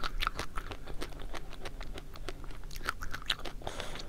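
Close-miked biting and chewing of a chocolate-coated ice cream bar, the hard chocolate shell crunching in many quick, irregular crackles.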